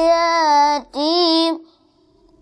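A boy's voice reciting the Quran in a drawn-out melodic chant: one long held note, a brief break, then a shorter phrase that stops shortly before the end.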